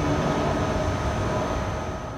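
Railway station ambience: a steady low rumble with a faint constant high whine from standing electric trains, fading out.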